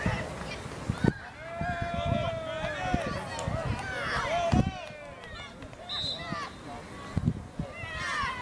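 Several voices shouting and calling over one another at a junior rugby league match, with some long drawn-out calls among shorter shouts. Two dull thumps come about a second in and just past halfway.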